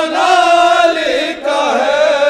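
A group of men chanting a noha (Shia lament) in unison through microphones, in long held notes, with a short break about a second and a half in before the next line begins.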